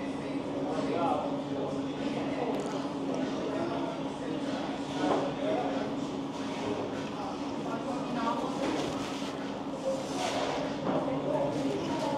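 Diner room ambience: faint background chatter over a steady low hum, with a few light knocks and clinks.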